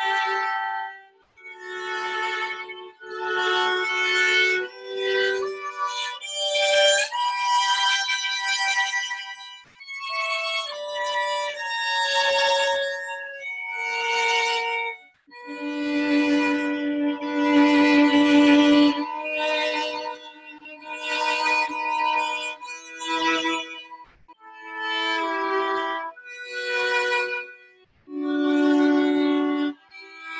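Two violins playing a duet, one on the first violin part and one on the second, in short bowed phrases separated by brief breaks.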